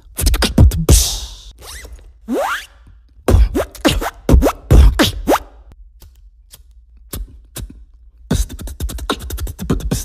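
Beatboxed mouth sound effects: sharp clicks and pops, a hissy burst about a second in, a rising whistle-like glide a little after two seconds, a cluster of loud pops around four to five seconds, and a fast run of clicks near the end.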